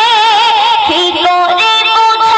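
A woman singing a gojol (Bengali Islamic devotional song) into a microphone, holding long notes with wide vibrato and moving through a run of shorter stepped notes in the middle.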